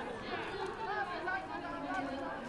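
Overlapping voices of football players and sideline team members calling out around the snap, a mix of chatter and shouts.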